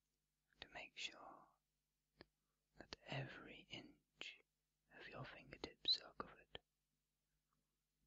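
Quiet, unintelligible whispering in three short phrases, with sharp little mouth clicks between the words.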